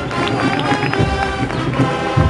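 Spanish Holy Week agrupación musical, a processional marching band, playing a march: sustained brass chords over a bass drum beating about once a second.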